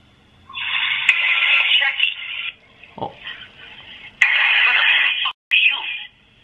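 A voice on the other end of a phone call, played through a smartphone's loudspeaker. It is thin, tinny and distorted, and comes in two stretches: the first about two seconds long, the second about a second and a half.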